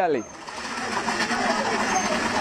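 A man's voice trails off at the very start. Then a steady machine-like whirr builds gradually in level, with faint voices in the background.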